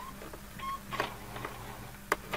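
A few faint, sharp clicks and two short high beeps over a steady low electrical hum.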